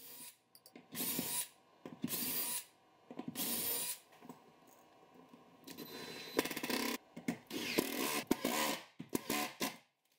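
Cordless power drill driving screws into plywood in about six short bursts, fastening a rotating lazy-susan shelf's base to a cabinet floor.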